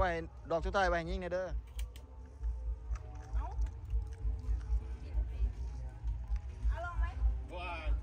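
Voices over background music with a steady low beat, with a couple of sharp clicks about two seconds in.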